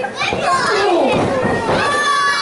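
Spectators shouting and yelling, several high-pitched voices overlapping, with one long drawn-out call near the end.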